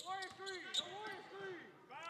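A basketball being dribbled on a hardwood gym floor, with a few sharp bounces, under raised voices calling out across the gym.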